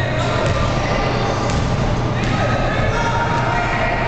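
Indistinct voices of children and onlookers echoing around a gymnasium during a kids' basketball game, with a couple of faint knocks about half a second and a second and a half in.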